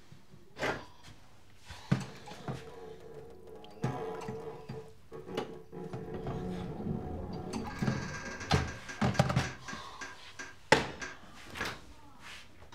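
Kitchen handling sounds: a string of sharp knocks, clatters and thunks as things are picked up and set down, the loudest about three-quarters of the way through, with a door opening near the end. Background music under it.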